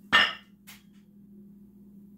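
A single sharp knock of a hard object with a brief ringing tail, then a lighter click about half a second later, over a faint steady hum.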